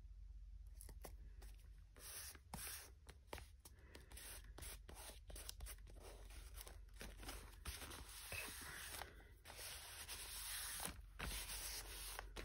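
Faint, irregular rustling and scraping of paper as hands rub and press glued collage pieces flat onto a journal page, with small crinkles and taps, starting about a second in.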